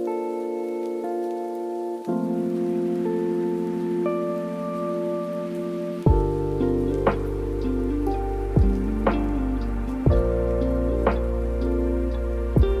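Lo-fi hip hop track of held, soft keyboard chords over a steady patter of rain. About halfway through, a deep bass and a slow drum beat come in.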